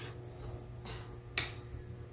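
Small handling noises and one sharp click about one and a half seconds in as a new NVMe M.2 SSD is pressed into its slot on a laptop motherboard, over a faint steady low hum.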